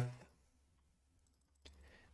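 Near silence with one faint computer mouse click about one and a half seconds in, as a button on an on-screen calculator is clicked.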